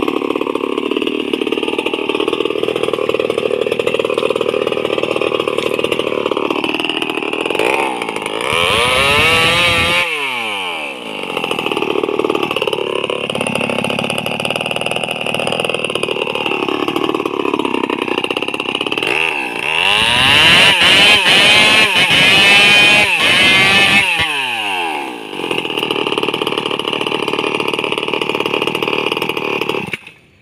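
A two-stroke chainsaw running at a steady idle. It is revved hard twice, briefly about eight seconds in and for several seconds from about twenty seconds, dropping back to idle after each, and the sound cuts off abruptly at the very end.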